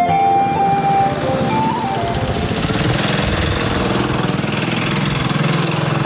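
Held, flute-like notes of background music in the first second or two, fading into the steady running of an engine, a low rapid throb under a hiss.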